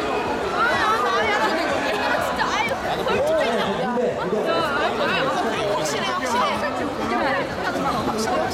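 Crowd chatter: many voices talking over one another, with a man speaking into a handheld microphone over the din.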